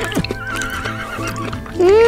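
A pony whinnying over background music, with a thin quavering call mid-way and a louder call that rises then falls starting near the end.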